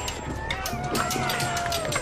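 A long, drawn-out cry with other voices calling over a commotion of many quick, sharp footfalls.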